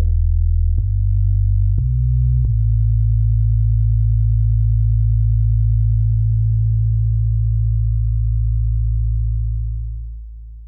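Electronic music: deep, sustained synthesizer bass tones that step to new pitches three times in the first few seconds, then hold one low chord and start to fade out near the end as the track closes.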